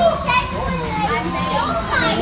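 Children's voices, several high voices talking and calling out over one another amid other visitors' chatter.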